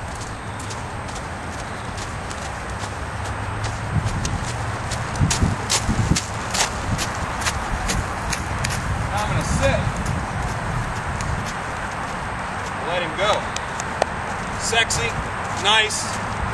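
Hoofbeats of a Friesian gelding trotting on the dirt footing of a round pen under a rider, a run of irregular knocks over a steady low rumble.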